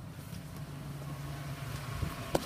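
Chevrolet Silverado 1500 pickup's engine idling, heard as a steady low hum inside the cab.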